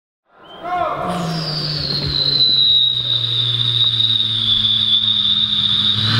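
Beatboxer into a microphone holding a high whistle-like tone over a low hum, the whistle sliding slightly down in pitch. It starts suddenly from silence and holds steady as an opening before the beat.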